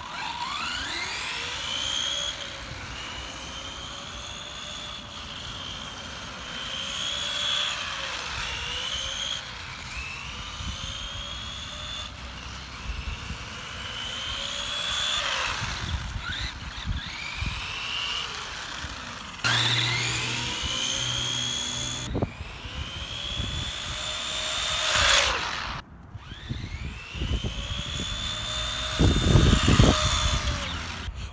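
Radio-controlled Tamiya Terra Scorcher buggy with a standard 540 silver-can brushed motor on a 15-tooth pinion, whining as it laps. The motor and gear whine rises as the buggy accelerates and falls as it lets off, over and over, and the sound breaks off abruptly a few times.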